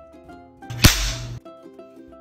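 A wooden slapstick (whip) snapped once with a single sharp crack, standing in for a door slam in a sound story. Light plucked-string music plays underneath.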